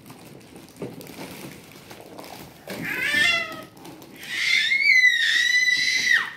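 A toddler crying out twice: a short falling wail about three seconds in, then a longer, louder high-pitched cry that holds and then drops away at the end.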